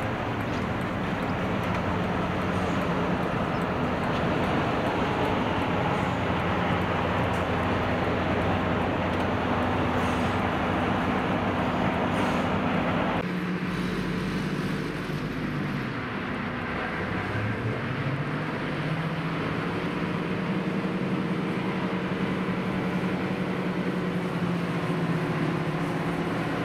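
Diesel locomotive engine working steadily as the train gets under way, heard from a carriage window just behind it over a constant rushing noise. Around two-thirds of the way through, the engine note drops briefly and then climbs back up.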